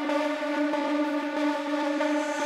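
A sustained synthesizer tone with evenly stacked overtones, held steady with no drums or bass beneath it, in a breakdown of an EBM/techno track.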